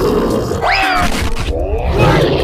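Deep gruff grunting growl, a monster-style voice effect for an animated Hulk, with a pitched rising cry about half a second in, over background music.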